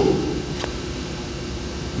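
Steady room hum from a fan or air-handling system, with a low steady tone underneath. A faint single click comes about half a second in.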